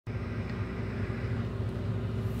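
Steady low drone of a combine harvester's engine and machinery, heard from inside the cab.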